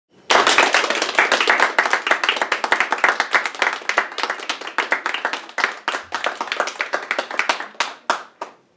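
A small group of people clapping their hands in applause, many quick overlapping claps that start abruptly and thin out near the end.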